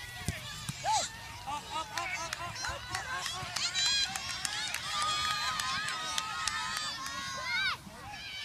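High-pitched, wordless shouts and calls from young girls playing soccer, with sideline voices, including one longer held call near the end.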